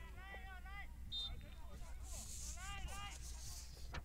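Distant shouting voices of players on the pitch, two short bursts of calls, over a steady low rumble from the outdoor microphone. A brief high chirp sounds about a second in.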